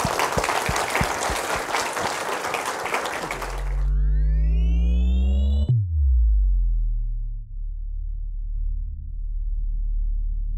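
Audience applauding for about four seconds, then an electronic logo sting: a rising sweep of several tones that cuts off in a sudden hit, followed by falling tones and a low steady drone.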